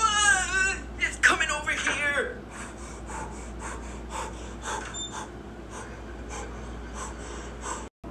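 A woman's high, wavering cry of fright, followed by more short whimpering cries, then a string of quieter quick gasps about two or three a second.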